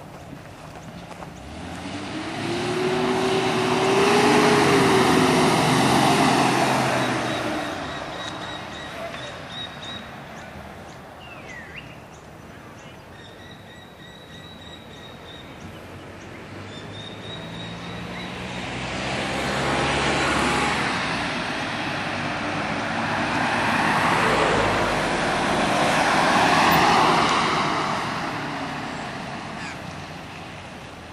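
1995 Jeep Cherokee Limited driving past on a road: its engine and tyres swell to a loud pass a few seconds in, the engine note rising as it accelerates, then fade away. It comes past again in the second half, loud for several seconds before fading.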